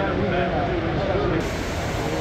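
People talking, with the steady background noise of a crowd around them; the voices are clearest in the first half.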